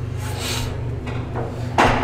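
Steady low room hum, broken near the end by one sharp knock.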